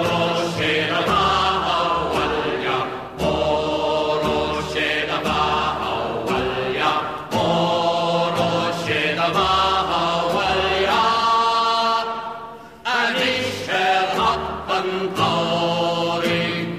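Background music: a song with long sung vocal phrases, broken by a few short pauses.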